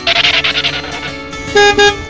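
Car horn sound effect: two short beeps in quick succession near the end, after a brief noisy rushing burst at the start. Soft acoustic guitar music plays underneath.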